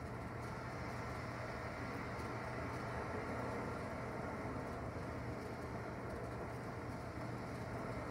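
Recorded ocean waves playing in the background: a steady, even rush of surf with a faint low hum beneath.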